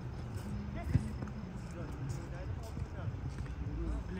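Football being kicked on an artificial-turf pitch: one sharp thud about a second in. Players' shouts are faintly audible across the pitch.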